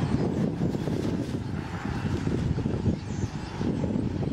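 A steady low rumble with faint high-pitched squeals from a large flock of birds overhead.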